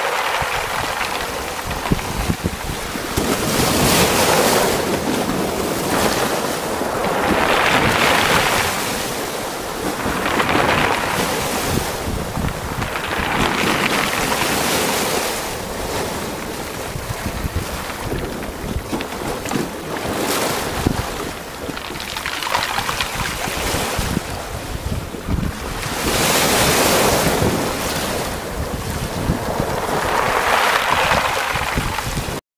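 Choppy sea water rushing and splashing along a moving sailboat's hull, swelling in surges every few seconds, with wind buffeting the microphone.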